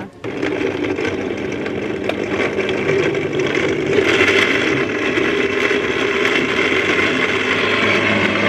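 Electric blender running under load, chopping chunks of pineapple, carrot, beetroot and ginger into a pulp for juice. It starts just after the opening, runs steadily, and takes on a brighter, higher sound about halfway through as the fruit breaks down.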